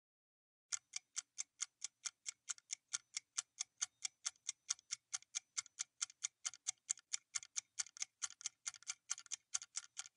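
Clock-ticking sound effect of a quiz countdown timer: quick, even, identical ticks, about four a second, starting about a second in.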